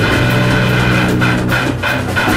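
Sludge/doom metal band recording: electric guitar and bass holding low notes over a drum kit, with drum and cymbal hits throughout.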